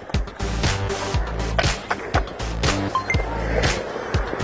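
Background music with a steady beat of about two beats a second, over skateboard wheels rolling on concrete.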